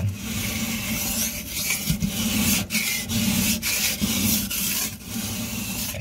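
Steel kitchen knife blade stroked back and forth on a wet silicon carbide sharpening stone: a steady gritty rasp, broken by short gaps between strokes.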